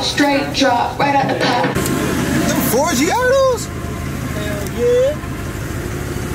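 Voices, then from a cut about two seconds in, a classic Chevrolet car's engine idling steadily under people's voices.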